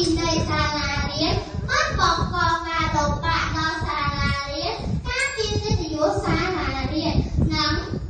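A young girl's voice speaking Khmer into a microphone, delivering a speech with only brief pauses between phrases.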